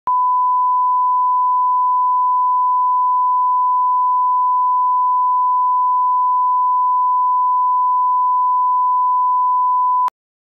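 1 kHz reference test tone accompanying SMPTE color bars: a single steady pure beep at one pitch, unbroken throughout. It is the line-up tone used to set audio levels at the head of a broadcast master.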